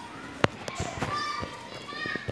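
Children's voices in the background, faint and indistinct, with a few sharp clicks, the loudest about half a second in.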